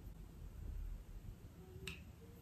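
Quiet room tone with a low hum, and a single short sharp click near the end.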